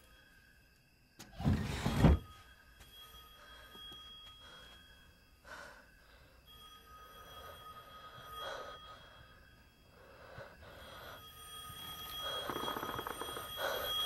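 A telephone ringing, its tone stopping and starting every few seconds, with one loud thud about a second and a half in.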